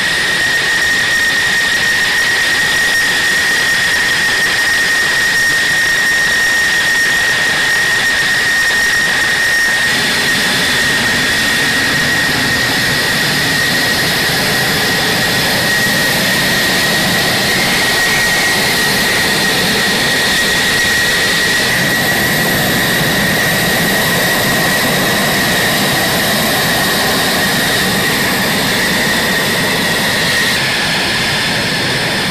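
F-16 Fighting Falcon jet engine at ground idle while taxiing: a loud, steady high-pitched whine over constant rushing noise. The sound shifts abruptly twice, about a third and about two-thirds of the way through.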